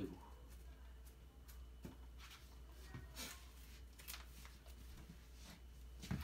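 Faint, scattered rustles and light ticks of hand-crafting work: cut-out white flowers being handled and pressed onto the collar of a dress form.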